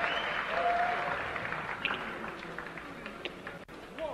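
Concert audience applauding between songs, the applause dying away to a scattering of claps, with a brief held tone about half a second in.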